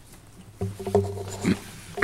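A man clearing his throat with a low grunt held on one pitch for about a second, ending in a short, sharper burst.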